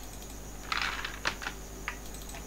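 Computer keyboard keystrokes: a short cluster of key noise a little past the middle, followed by a few separate clicks.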